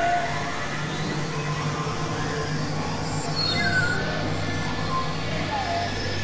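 Dense layered mix of several tracks playing at once: steady low drone tones under short gliding tones and a constant noisy wash.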